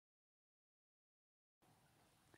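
Near silence: digital silence, then faint room tone from about one and a half seconds in.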